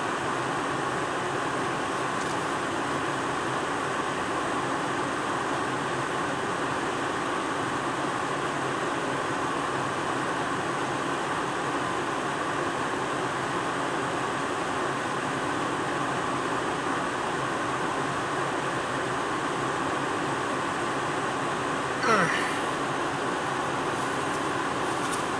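Steady hum inside a car cabin stopped in traffic, the engine idling and the climate fan blowing. About two seconds before the end comes one short, louder sound whose pitch sweeps quickly upward.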